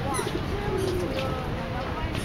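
A woman's singing voice from a Chinese pop song holding a long, wavering note that starts with a quick slide.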